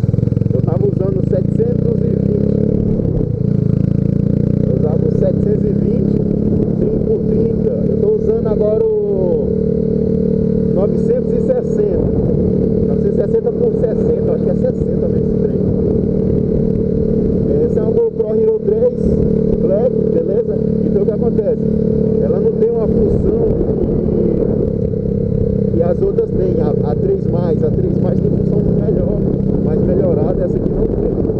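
Yamaha Factor 150's single-cylinder engine running steadily as the motorcycle cruises along the road.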